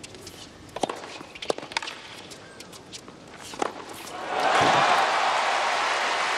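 Tennis ball being struck by rackets in a short rally on a hard court: a serve about a second in, then a few more sharp hits, the last and loudest at about three and a half seconds. Crowd applause breaks out about four seconds in and keeps going.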